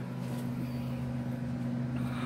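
A steady low hum, with a few fixed low tones, running evenly and unchanging.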